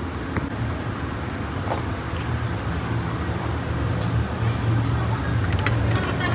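Low, steady rumble of a road vehicle's engine, growing slowly louder, with a few faint clicks.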